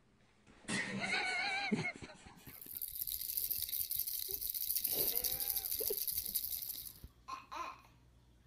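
Babies laughing and squealing: a squealing laugh about a second in, then a baby cooing and squealing over a steady high rattle from a shaken toy, and a short baby laugh near the end.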